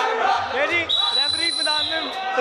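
Several men talking and calling out over one another in a hall. A steady high-pitched tone starts about a second in and holds for about a second.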